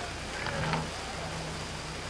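Steady hiss with a low hum underneath, the background noise of an old recording, with a faint brief sound about half a second in.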